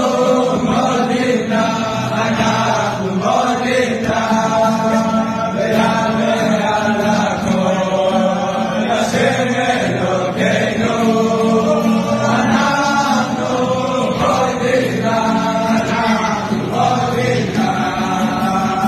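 A group of men singing together in unison, a continuous chant-like song.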